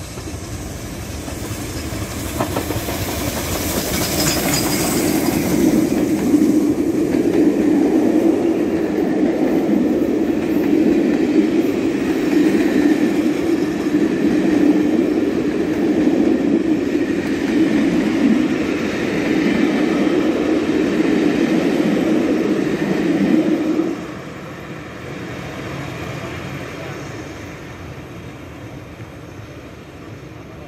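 Steam locomotive 45596 Bahamas, a three-cylinder LMS Jubilee 4-6-0, passing at speed with its train of coaches. The rumble of wheels on rail builds over the first few seconds and holds loud while the coaches roll by. It drops off suddenly about six seconds before the end as the last coach passes, then fades away.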